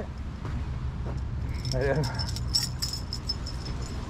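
Metal chain dog lead jangling in a run of small clinks through the second half, over a low rumble.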